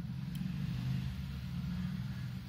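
Ballpoint pen writing figures on a paper ledger sheet, a faint scratching, over a steady low rumble.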